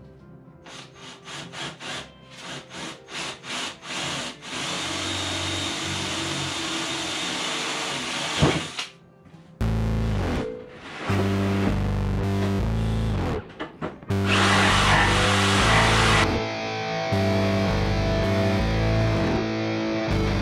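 Cordless drill boring a starter hole through a countertop board: a quick run of short trigger bursts, then a steady run. About ten seconds in, rock music with heavy guitar takes over.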